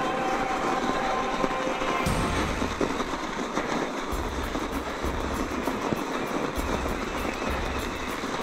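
Electric mountain bike rolling over packed snow: a steady noisy rumble of the tyres with a rapid clatter of small ticks from the bike, and wind buffeting the microphone in gusts that start and stop.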